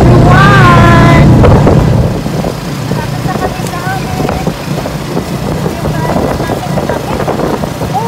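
Motor tricycle riding along a road, its running noise mixed with wind buffeting the microphone. The sound is very loud for about the first two seconds, then drops to a lower steady drone.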